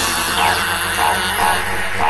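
Dark psytrance track in a breakdown: the kick drum and bass drop out, leaving a sustained layered synth texture with a few short synth blips.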